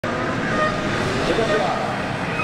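A voice speaking in Japanese, reading out a comment like an event announcer, over motorcycle engines running at the start area.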